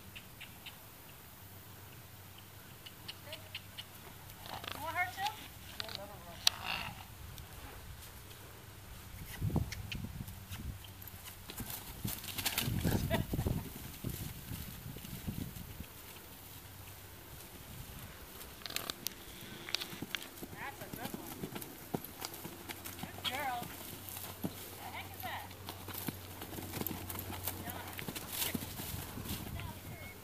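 Hooves of loose horses cantering on grass, dull uneven thuds that come thickest in the middle of the stretch.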